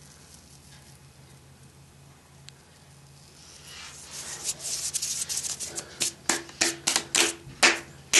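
Dry fingers and hands rubbing and brushing against each other, powdery synthetic fibre crumbling between them. It starts faint and builds about halfway through into a quick run of sharp brushing strokes, about three a second.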